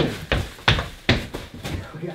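Footsteps of a person in a costume spacesuit walking quickly along a built set's corridor floor: a run of thuds, about three a second.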